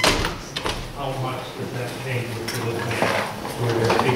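Speech: an audience member asking the presenter a question, with a sharp click at the very start.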